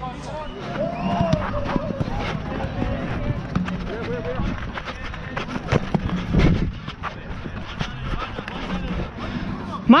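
Players' voices calling across an amateur football pitch, over footsteps and small knocks of play on artificial turf, with a heavier thump about six and a half seconds in.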